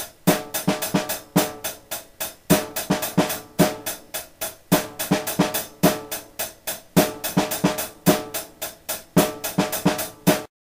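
A drum kit playing a steady beat, with kick, snare and hi-hat strikes coming evenly several times a second and cymbal wash on top.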